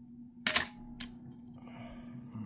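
Olympus OM-4T 35mm SLR's shutter being released: a loud mechanical clack about half a second in, then a second, shorter click about half a second later.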